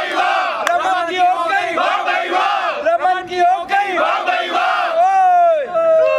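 A group of young men shouting together in unison, a rowdy chant that ends in one long drawn-out yell.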